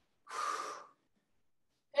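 A single short breath, about half a second long, from a woman straining through a body-weight push-up.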